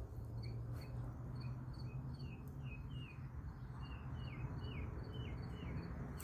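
Small bird chirping: short downward-sliding notes repeating once or twice a second, over a steady low hum.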